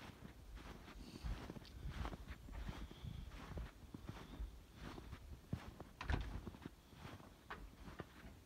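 Footsteps in three or four inches of fresh snow: an irregular run of soft crunches and thuds, the loudest about six seconds in.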